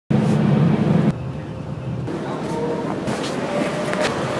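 Cabin noise inside a coach bus: a steady rumble and hiss. A louder low hum during the first second drops away abruptly.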